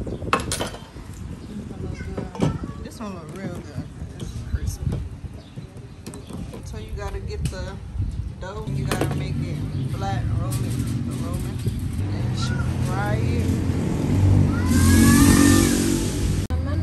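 Voices talking in the background, with an engine running nearby from about halfway in, its hum growing louder and joined by a rush of noise near the end.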